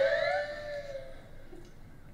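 A man laughing: one long, high-pitched, wordless sound that falls in pitch over about a second and then dies away.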